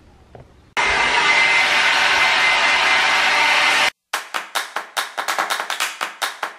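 Handheld hair dryer blowing on a wet dog's coat: a loud, steady rush of air with a faint whine, starting abruptly about a second in and cutting off sharply near four seconds. Then electronic music with a quick beat.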